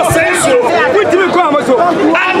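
A man speaking emphatically into a cluster of microphones, with faint crowd chatter behind him.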